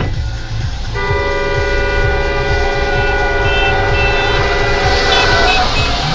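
A vehicle horn sounding one long held blast of several steady tones, starting about a second in and lasting about four and a half seconds, over the low rumble of a car driving.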